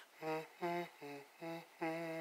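A person humming a slow melody unaccompanied: a string of five short notes, the last one held longer.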